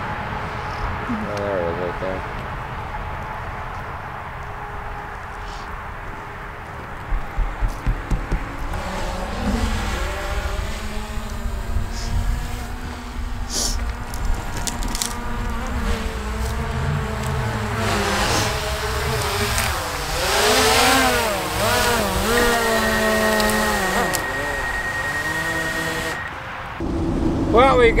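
DJI quadcopter drone's propellers whining as it descends and hovers low close to the microphone, the pitch wavering up and down as the motors hold position.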